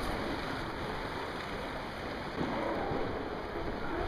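Steady rush of wind and sea water, with wind buffeting the microphone in a low, uneven rumble.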